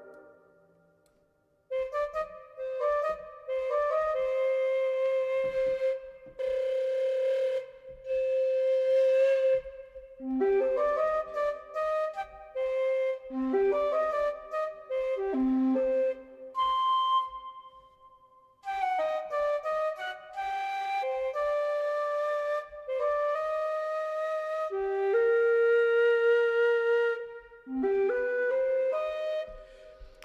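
Sampled Chinese dongxiao (end-blown bamboo flute) virtual instrument, Ample China Dongxiao, playing a slow melody of single held notes in short phrases, with reverb from the Galactic plugin. The melody starts about two seconds in and pauses briefly a little past the middle.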